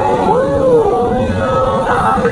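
A man singing into a microphone, amplified through a small street amplifier over a backing track; his voice swoops up and back down in the first second.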